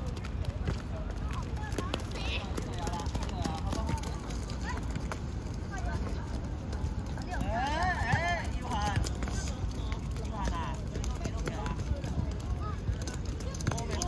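Children shouting and calling out during a youth football game, with high, wavering shouts about eight and ten seconds in. Under them are the patter of running footsteps and scattered small knocks from play on the court.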